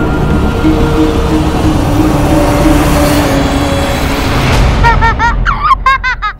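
Dramatic background score: a dense, loud swell with a few held notes. About five seconds in it gives way to a run of short, quick pitched notes.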